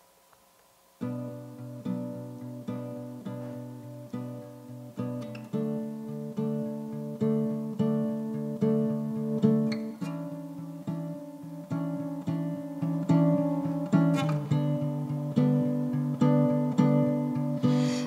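Acoustic guitar playing an introduction of chords in a steady, even rhythm, beginning about a second in.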